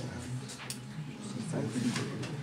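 Indistinct speech with no clear words, with a few light clicks.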